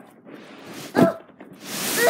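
One short, sharp, loud vocal cry about a second in, then a rising rustle of the camera being jostled near the end.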